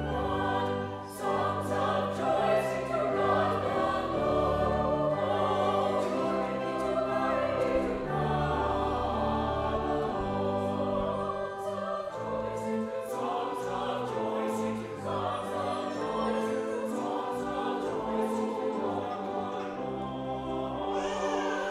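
Mixed church choir singing an anthem, accompanied by pipe organ with long-held low notes.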